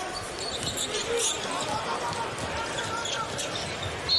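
Basketball game broadcast sound: a steady arena crowd murmur with faint clicks of the ball bouncing and faint voices.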